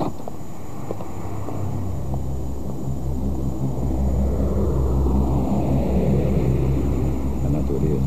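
A car engine running with a low, steady hum that grows louder over the first few seconds and stays strong to the end.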